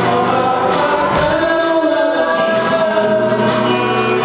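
Live band playing amplified: acoustic and electric guitars with a drum kit keeping a steady beat, and singing over them.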